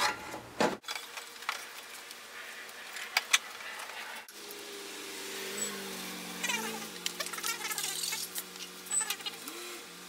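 Clicks, knocks and rustling of hands working a plastic intercooler pipe and its clamps back into place on a VW 1.9 TDI. From about four seconds in, a low steady hum that wavers in pitch runs underneath.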